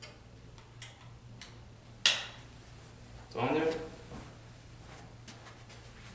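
Plastic buckles and nylon straps of a KED being handled: faint ticks, then one sharp click about two seconds in as a strap buckle snaps. About a second later a man makes a brief vocal sound.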